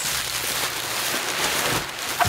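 Clear plastic bubble wrap crinkling and rustling steadily as it is handled and pulled out of a cardboard shipping box.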